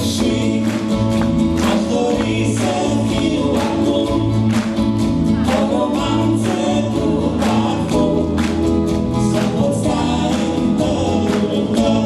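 A live light-music band plays a song: a woman sings over keyboard and guitar accompaniment with a steady beat.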